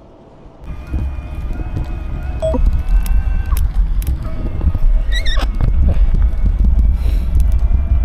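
Wind buffeting the camera's microphone while riding a bicycle, a loud low rumble that starts abruptly about a second in.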